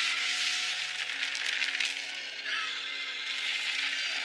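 Animated-film soundtrack: orchestral score with steady low held notes under a loud hissing, rushing sound effect that eases about halfway through.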